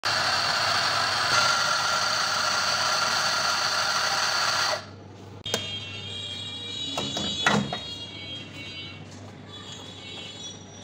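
Electric burr coffee grinder grinding espresso beans, a loud steady motor-and-grinding noise that cuts off suddenly about halfway through. After it come a faint steady whine and a few sharp knocks and clatters from handling at the espresso machine.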